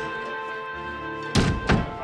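A wooden interior door pushed shut, two thuds about a third of a second apart, over steady background music.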